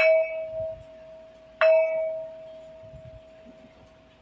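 A bell struck twice to open the meeting, once right at the start and again about one and a half seconds later. Each strike rings on with a clear tone and fades slowly. They are the last two of three strikes.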